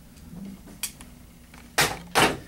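Handling of airsoft rifles being swapped at a shop counter: a light click about a second in, then a brief, louder noisy rustle near the end.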